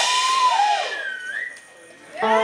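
Electric guitar notes bending up and down in pitch and ringing out, with one slide upward about halfway through, fading away near the end.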